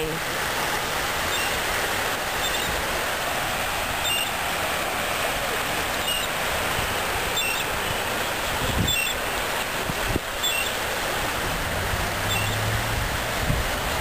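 Steady rushing noise of wind and small waves lapping on a shallow beach shoreline. A short low hum comes in near the end.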